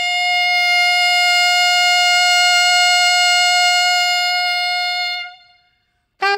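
Unaccompanied alto saxophone holding one long, steady high note for about five seconds, then fading away to silence near the end.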